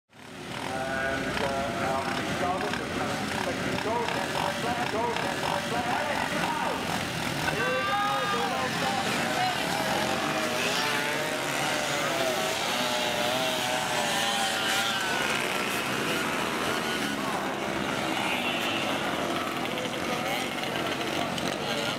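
A pack of small two-stroke moped engines revving together at a mass race start. Many whines rise and fall over one another.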